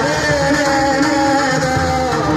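Marathi devotional abhang singing: a voice holds a long, wavering note over steady instrumental accompaniment.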